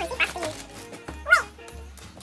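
A dog gives short yips and whines, the loudest a single sharp yip about a second and a half in, over background music.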